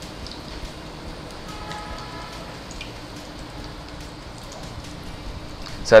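Momos deep-frying in hot sunflower oil in a wok: a steady, even sizzle with small pops.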